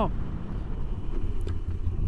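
Low, steady rumble of a Moto Guzzi V85TT riding under hard braking from about 80 km/h, with its air-cooled transverse V-twin and wind noise heard from on board the bike.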